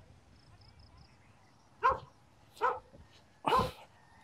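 A dog barking three times, about a second apart, starting a little under two seconds in.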